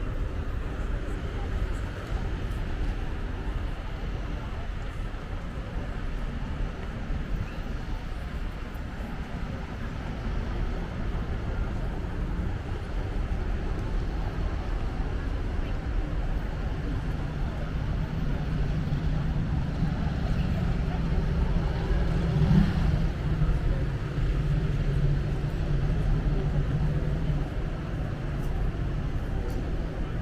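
Busy city square ambience: a steady traffic rumble with people talking. From a little past halfway, a low, steady engine hum rises over it and holds until near the end.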